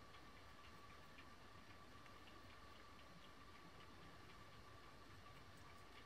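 Near silence: room tone with a faint steady hum and faint, light ticks a few times a second.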